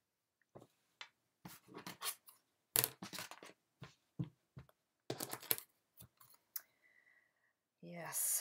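Soft cotton baby onesie being handled and smoothed flat on a cutting mat: a run of short rustles and brushes of fabric and hands, with a brief faint steady tone about seven seconds in.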